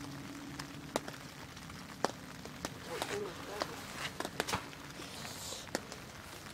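Light rain: a soft, even hiss with a few sharp, irregularly spaced ticks of drops striking close by.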